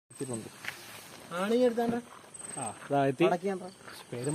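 People talking, in speech the recogniser did not transcribe. A faint, high, rapidly pulsed chirp like a cricket's is heard twice behind the voices, near the start and about halfway through.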